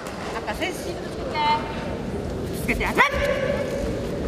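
Shouted calls from coaches and supporters echoing in a large sports hall over a steady crowd din, with a short pitched yell about a third of the way in and rising shouts near the end, one calling "sō sō sō" ("that's it").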